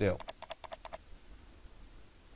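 Typing on a computer keyboard: a quick run of about eight keystrokes in under a second.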